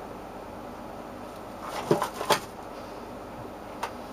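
Steady low background hiss with two short knocks about two seconds in and a sharp click near the end.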